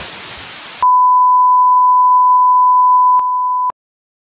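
A burst of TV static hiss, then a steady pure test-tone beep at about 1 kHz. The beep lasts about three seconds, drops in level shortly before the end and cuts off suddenly.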